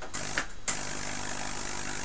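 A GU-81 vacuum-tube Tesla coil, fed from a microwave oven transformer, is switched on: a few clicks, then a steady buzzing hum with a high hiss as the coil starts throwing a small streamer from its top terminal on its first power-up.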